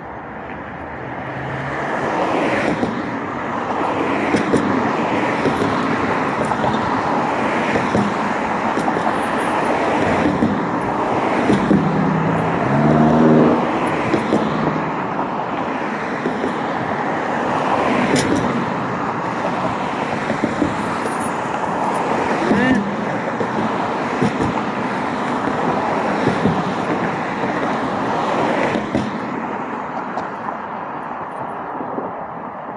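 Road traffic from cars on the adjacent street, a continuous rush of tyres and engines, with one vehicle passing louder about halfway through.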